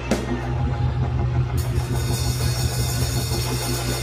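Live church band music with drums and a strong, steady bass line playing behind the sermon; a brighter, hissier layer joins about a second and a half in.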